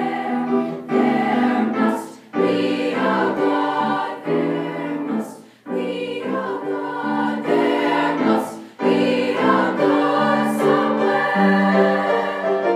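A high-school girls' choir singing in parts with piano accompaniment. The chords are held in phrases of about three seconds, each broken by a brief breath.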